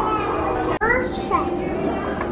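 Children's voices: high-pitched chatter and calls of young children playing, with a sudden brief dropout just under a second in where the sound cuts.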